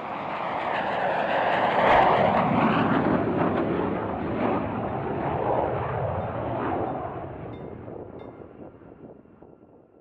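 Saab JAS 39 Gripen fighter's single jet engine on landing approach with its gear down, a loud jet noise that swells to a peak about two seconds in, holds, then fades away over the last few seconds as the aircraft passes.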